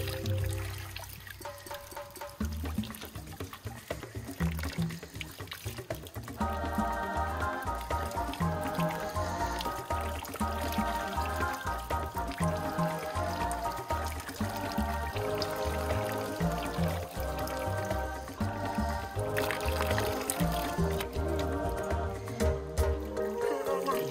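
Background music with a steady bass line, fuller from about six seconds in, over water being poured from a plastic jerrycan onto hair and running into a plastic bucket.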